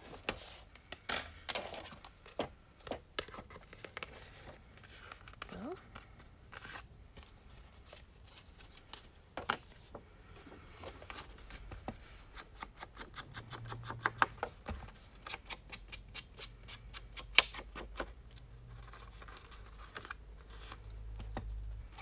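Hands handling and rubbing paper and card stock with craft tools: scattered taps, scrapes and rustles, with a run of quick scratchy strokes in the second half.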